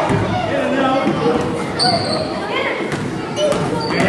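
A basketball bouncing on a hardwood gym floor in an echoing hall, with several sharp knocks, over players and spectators talking and calling out. A short high sneaker squeak comes about two seconds in.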